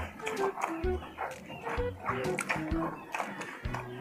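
Background music, a plucked melody of short notes over a bass line, with sharp clicks and crackles of eating on top: crisp roast pork skin and meat being torn by hand and chewed.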